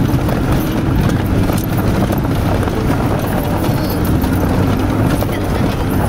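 A car driving over a bumpy mountain road: steady low engine and road rumble with irregular knocks and rattles from the jolting.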